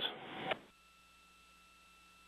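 A short burst of radio-line hiss at the end of a launch-control voice-loop transmission, cutting off suddenly about half a second in. Then near silence on the open line, with a faint steady high tone.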